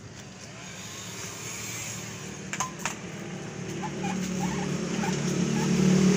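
A steady mechanical hum that grows steadily louder, with two sharp clicks about two and a half seconds in.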